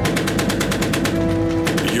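Maxim machine gun firing a rapid sustained burst, about ten shots a second, over background music with held notes.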